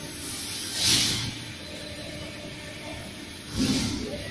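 Heavy engine lathe running as it turns a long steel shaft: a steady machine hum, with two short louder surges of noise, about a second in and again near the end.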